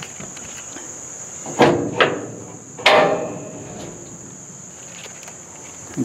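Two loud ringing metal clanks, about a second and a half and three seconds in, as the steel side wall of a Big Tex 14OD deck-over dump trailer is unpinned and lifted off. A steady high-pitched whine sounds underneath.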